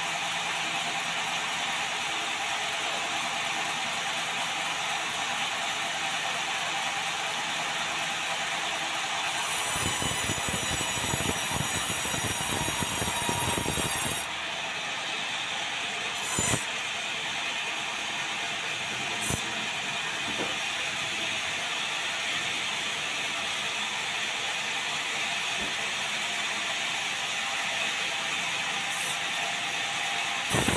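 Sawmill saw running steadily, with a louder, fuller stretch of about four and a half seconds about a third of the way in as the blade cuts a slab off a log. A few sharp knocks follow later.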